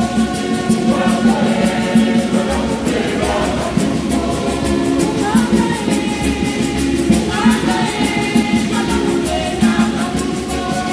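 A women's choir singing a hymn together in a church, many voices in unison over a steady rhythmic beat.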